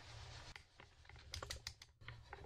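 Faint, light clicks and taps of a camera being handled and repositioned, in a quick cluster in the second half over a steady low hum.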